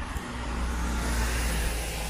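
Car traffic on a wet city street: tyres hissing on the wet road over a low engine hum, swelling slightly as a car goes by.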